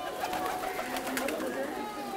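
Feral rock pigeons cooing in low, short calls amid a murmur of voices, while the ring of a struck bell dies away in the first second.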